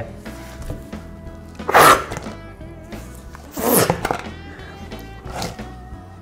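Steady background music, broken by two loud, short rushes of breath about two seconds apart and a weaker third near the end: a person forcefully blowing or sucking air at close range.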